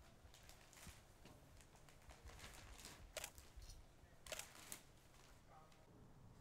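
Near silence with a few faint, short clicks and ticks, the clearest a little past three seconds and around four and a half seconds in.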